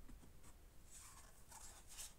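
Faint scratchy rustling of DVD discs and their case being handled, coming about a second in and again near the end, against near silence.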